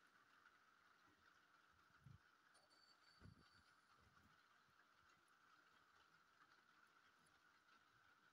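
Near silence: room tone, with two faint taps about two and three seconds in from a small plastic toy till being handled on a wooden table.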